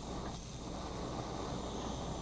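Steady hiss of a small blue gas-burner flame.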